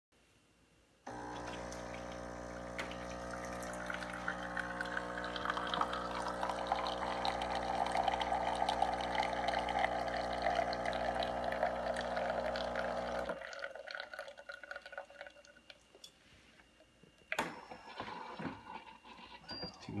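Saeco GranBaristo espresso machine brewing: its pump hums steadily while espresso pours into a glass cup, starting suddenly about a second in and cutting off about two-thirds of the way through. A sharp click follows near the end.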